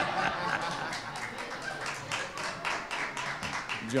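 A small audience laughing and clapping, with scattered hand claps over mixed laughter and voices.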